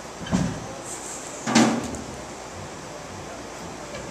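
Two sharp thumps about a second apart, the second the louder, over a steady room background.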